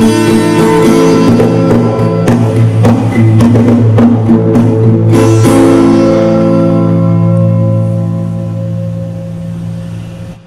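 Acoustic guitar strummed to close a song: a run of sharp, rhythmic strums, then a final chord a little past halfway that is left to ring and fade away.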